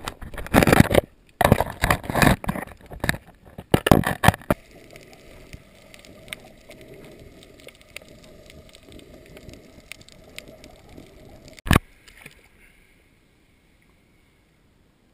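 Water noise picked up by a camera held underwater: several loud rushing surges over the first four seconds or so, then a low steady hiss, and one sharp knock near the end.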